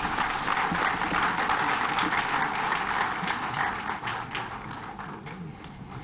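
Audience applauding: many hands clapping together, thinning out near the end.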